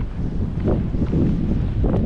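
Wind blowing across the microphone, a loud uneven low noise.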